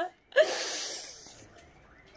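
A man's laugh: a short voiced catch about a third of a second in, then a long breathy exhale that fades away over about a second.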